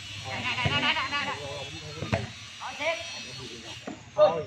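Volleyball rally: the ball is struck with a few sharp slaps, about a second apart, while players and spectators shout.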